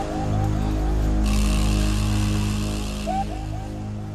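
Background music: a low steady drone under a repeating figure of short rising notes, heard at the start and again about three seconds in.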